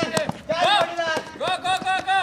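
Men shouting short, repeated calls of encouragement, with the quick footfalls of someone running.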